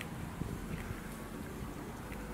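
Steady low rumble of wind on the microphone, with one faint click about half a second in.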